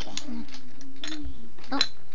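A child's voice holding a low hum, with a few light taps of small plastic toys handled on a wooden floor and a sharper click near the end, followed by a short "oh".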